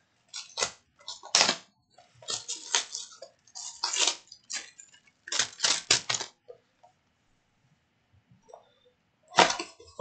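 Plastic shrink wrap crinkling and crackling as it is peeled and torn off a sealed box of baseball cards, in a run of short crackles that stops about two-thirds of the way through, with one more burst near the end.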